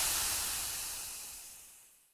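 Radio static sound effect, a steady hiss that fades away to nothing over about two seconds: the field broadcast being cut off.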